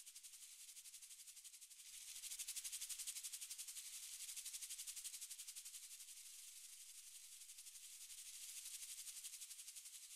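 Faint shaker-like rattle, a steady high hiss pulsing evenly about six times a second, that swells slightly about two seconds in.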